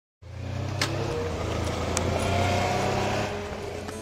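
Motorcycle engines idling with a steady low hum under outdoor noise, with two sharp clicks about one and two seconds in.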